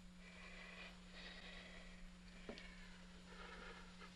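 Faint, laboured breathing of a dying man bent over a desk, over a steady low hum of an old film soundtrack. A faint click comes about two and a half seconds in.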